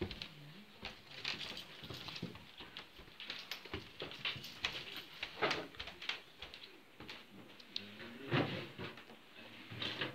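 A puppy's paws pattering on a wooden floor, with scattered light clicks and a few soft thumps.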